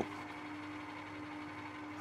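Metal lathe running with the chuck spinning, a faint steady hum with one steady tone.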